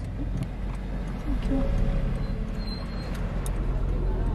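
Steady low rumble of background noise, with a faint voice saying "thank you" about a second and a half in.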